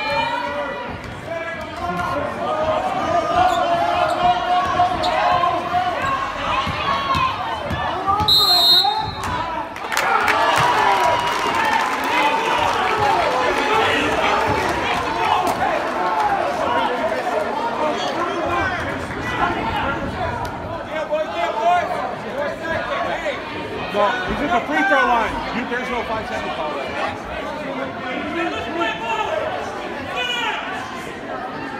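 Gymnasium crowd talking and calling out, with a basketball bouncing on the hardwood court. A short, high referee's whistle blast sounds about eight seconds in, and the crowd gets louder just after it.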